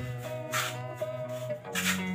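Background music with sustained tones, and twice a brief gritty scrape: hands working the sand-cement mortar bed of a floor being prepared for tiling.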